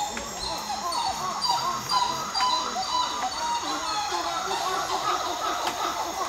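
Rainforest ambience: many birds calling at once in a dense chatter of short overlapping calls, over a steady high drone of insects.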